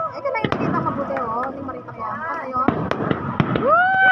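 Aerial fireworks bursting with several sharp bangs, among people's voices.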